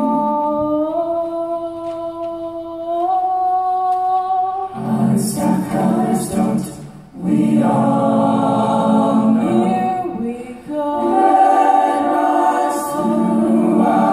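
High school jazz choir singing a cappella in close harmony: a held chord that moves up twice in the first few seconds, then fuller, louder phrases with two short breaks.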